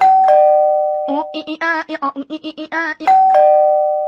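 Elevator arrival chime, a two-note ding-dong falling from the higher note to the lower, sounding twice: at the start and again about three seconds in. Between the chimes, a high voice chants quick repeated syllables.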